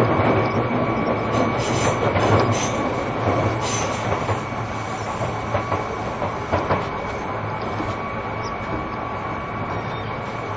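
Seibu New 2000 series chopper-controlled electric train running at speed, heard from inside the car: a steady rumble of wheels on rail with scattered clicks over the rail joints and a steady thin high tone. It grows gradually quieter over the first half.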